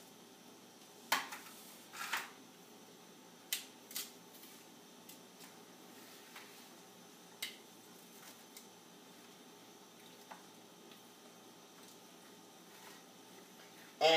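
A few light clicks and knocks of metal kitchen tongs and a plate being handled on a granite countertop, spaced out over the first several seconds, over faint steady room noise.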